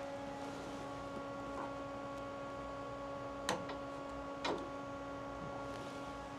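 Steady electrical hum of a powered-up Haas VF-2SS CNC machining center. Two short clicks come about a second apart midway through as the machine's door is cycled.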